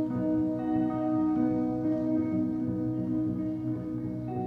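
Jazz trio of saxophone, double bass and guitar playing: long held notes over a plucked double-bass line that moves note by note.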